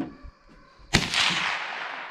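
A single .30-30 rifle shot about a second in: a sharp crack followed by a long echo that slowly dies away.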